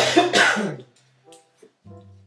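A woman coughing into her hand, two hard coughs close together in the first second, over quiet background music.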